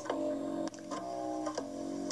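Background music: soft held notes that change chord every second or less, over a light ticking beat of about three ticks a second.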